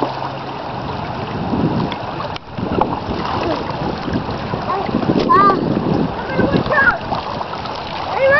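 Water splashing and sloshing as a child moves about and wades in a shallow rocky stream, over a steady rush of water. Short high-pitched voice sounds come about five seconds in and again near seven seconds.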